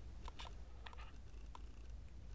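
A few faint, short clicks from a cardboard action-figure card being handled, over a low steady hum.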